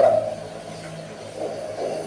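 A man's amplified word ends right at the start, followed by a pause filled with a steady low hum. Faint voice sounds come near the end.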